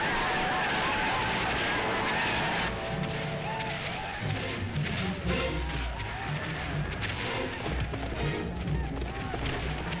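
Film soundtrack of a cavalry battle scene: music over a dense din of battle noise, which drops back about three seconds in to scattered calls and low rumbling.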